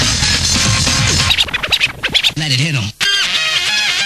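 Rave DJ mix: the playing tune breaks off about a second in for a stretch of record scratching, with the pitch wavering back and forth as the vinyl is pushed and pulled. Then comes a brief cut to silence, and the next track drops in with a repeating melodic riff.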